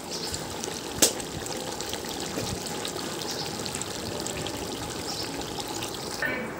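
Chicken curry bubbling steadily in a large pot over a wood fire, with one sharp click about a second in.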